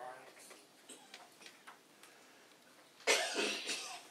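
A person coughing once, in a short harsh burst about three seconds in, after a few seconds of faint small clicks and rustles.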